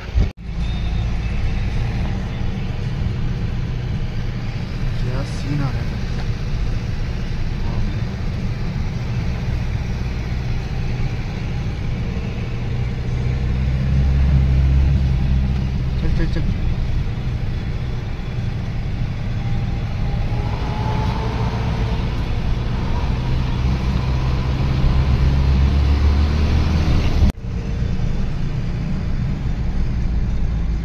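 Steady engine and tyre rumble heard inside a moving car's cabin, swelling slightly twice. The sound breaks off briefly just after the start and again near the end, where the footage is cut.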